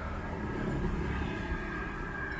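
Steady outdoor rumble of road traffic, with no distinct knocks or clicks standing out.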